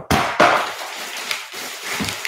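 Rummaging in a plastic storage tub: items clattering against the plastic and plastic-wrapped dialysis needle packaging crinkling. It starts sharply just after the beginning, then goes on as rustling with scattered clicks.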